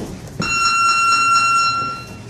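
Boxing gym round timer giving one steady electronic buzz, starting just under half a second in and lasting about a second and a half. A short thump of a punch or footstep comes just before it.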